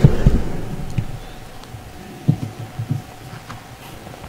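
A few dull, low thumps: a loud one right at the start, then a quick cluster of softer ones a little over two seconds in, over a faint steady hum.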